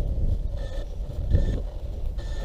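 Wind buffeting the microphone, a steady low rumble, with three short, faint high tones about a second apart.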